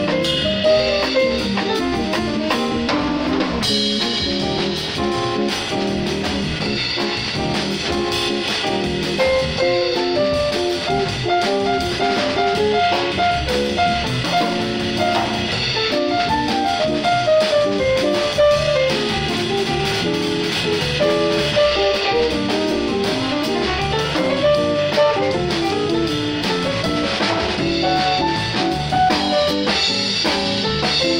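A small jazz combo playing live: electric keyboard, drum kit with cymbals and electric guitar, with moving melodic runs over steady drumming.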